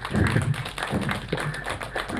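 Audience clapping: many quick, overlapping hand claps.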